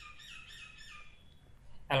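A bird chirping, a quick run of about five or six short, high calls that stop after about a second.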